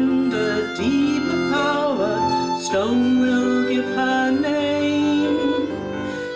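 Live performance of a slow song: a woman singing, accompanied by violin and electric bass guitar.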